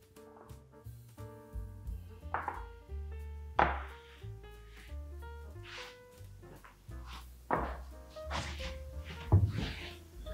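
Soft background music with held notes, overlaid by a few short, faint handling noises as a small ball of brigadeiro dough is picked up and set on a digital kitchen scale.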